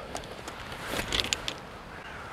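Golf stand bag being picked up and carried, the clubs in it clinking in a few quick clicks about a second in, over a low rumble of wind on the microphone.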